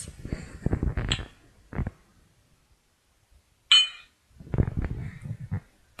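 Mechanical clattering and knocking, then after a short pause a single sharp metallic clink followed by more clattering knocks: a timing belt breaking and the valves striking the piston, damage that makes for an expensive repair.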